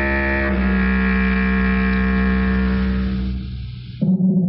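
Closing music of sustained low chords. The chord changes about half a second in, then fades away near the end.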